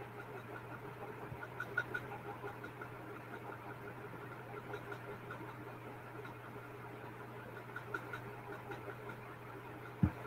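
Low-level background room tone picked up by a computer microphone: a steady low hum under faint, indistinct flickering noise, with no clear speech.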